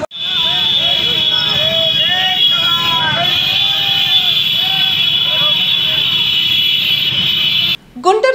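A motorcycle rally on the move: many small motorcycle engines running together, with a steady high blare of many horns held down, and men's voices shouting over it. It all cuts off abruptly just before the end.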